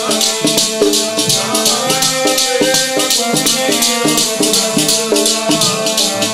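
Instrumental passage of Sikh kirtan music: a sustained melody that moves from note to note over a fast, even jingling percussion rhythm.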